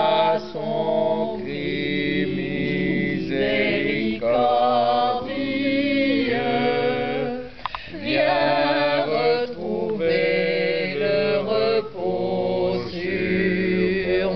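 A small group of voices singing a slow chorale a cappella, in long held phrases with brief breaks between them.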